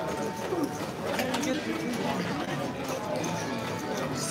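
Indistinct background voices of a busy casino poker room, at a steady moderate level, with a few faint clicks about a second in.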